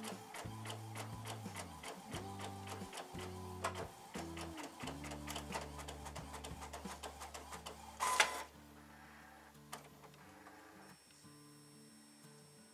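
Epson WorkForce WF-7720 inkjet printer printing a sublimation transfer sheet: rapid, even clicking as the print carriage and feed run, over motor tones that step up and down in pitch. About eight seconds in comes a short, louder rush, after which the printer runs more quietly.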